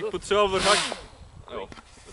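Mostly speech: a short, loud burst of a man's voice with a strong hiss in it, within the first second.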